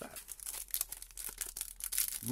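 Foil wrapper of a Panini Prizm trading card pack crinkling and tearing as it is pulled open by hand: a dense run of small crackles.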